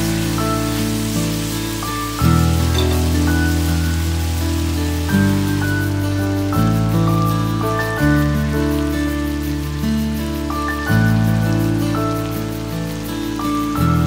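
Background music of sustained chords over a bass line, the chord changing every couple of seconds, over a faint sizzle of chicken and vegetables frying in a wok.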